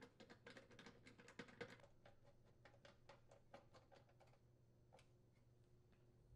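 Very faint, irregular small clicks and ticks of a screwdriver turning mounting screws into a range's sheet-metal duct to secure a new thermal cut-out, thick for the first couple of seconds, then thinning out to a last click about five seconds in.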